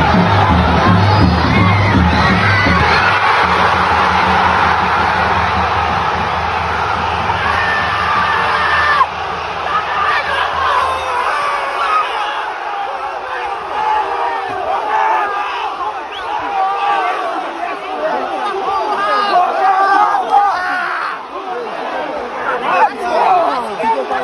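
Crowd cheering and shouting for a goal over background music with a heavy repeating beat. The music ends about eleven seconds in, leaving excited shouting from a cluster of celebrating football players close to the microphone.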